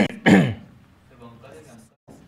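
A man clearing his throat: two short, loud voiced bursts falling in pitch, one right after the other at the start, followed by quiet.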